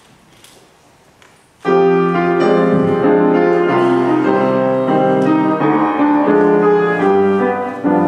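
Piano introduction to a choral song: after about a second and a half of quiet, piano chords begin suddenly and carry on.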